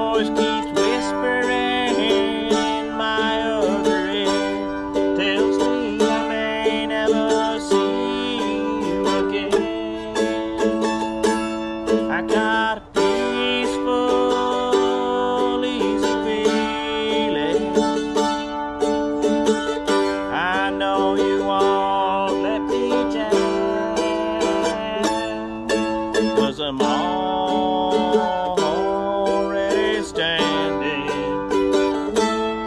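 Instrumental break of a solo acoustic song: a small string instrument strummed in a steady rhythm, with long held melody notes and short bends over the chords.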